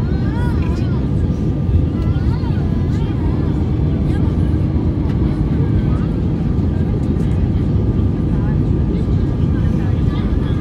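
Steady, low cabin noise inside an Airbus A320 descending on approach, from the engines and the air rushing past the airframe, with a faint steady hum in it. Faint passenger voices are heard over it in the first few seconds.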